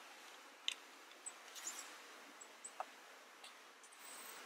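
A few faint, scattered clicks and light plastic handling noise as a mobile phone is fitted into the phone clamp of a remote controller.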